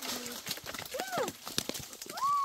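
Hands rummaging through dry oak leaves and stones while gathering acorns, making scattered light clicks and clatters. A short high voice-like call rises and falls about halfway through.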